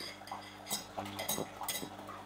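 Steady low hum with about five faint, short clicks and taps scattered through the second half.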